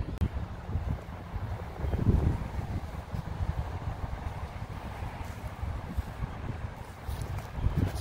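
Wind buffeting the camera microphone outdoors: a low, uneven rumble with no clear events.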